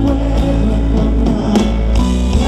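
Live band music from a stage: acoustic guitars over a heavy, steady bass, played loud and without a break.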